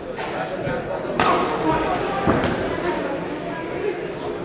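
Spectators' voices echoing in a large hall around a ring bout, with two sharp smacks of blows landing, about a second in and again about a second later.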